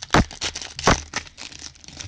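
Foil wrapper of a Bowman baseball card pack being torn open and crinkled by gloved hands. There are two sharp rips, one just after the start and one about a second in, amid steady crackling that fades near the end.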